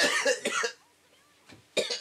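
A man coughing and laughing in short, loud bursts: a cluster in the first half second or so, then another burst near the end.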